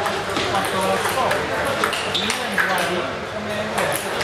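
Table tennis balls clicking sharply and irregularly against bats and tables, from rallies at several tables at once, echoing in a large hall.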